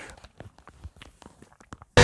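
Faint, scattered clicks and knocks of headphones being put on and handled, a few small taps a second. Right at the end the rock song cuts in suddenly at full level.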